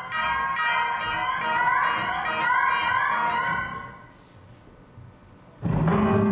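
Electric guitar transformed live by computer processing: layered, wavering pitched tones that fade away about four seconds in. After a quieter moment, a loud new entry comes in shortly before the end.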